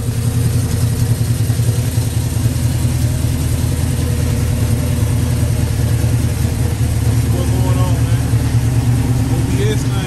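V8 engine of an LS-swapped Chevrolet OBS pickup idling steadily.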